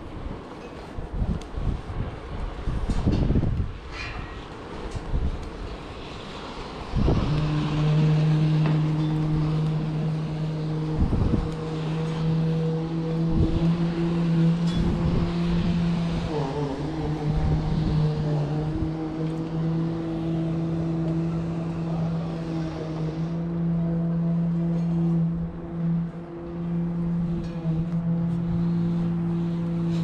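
Knocks and clanks of boots and hands on the steel ladder rungs inside a tower crane's lattice mast during the descent. About seven seconds in, a steady machine hum starts suddenly and carries on.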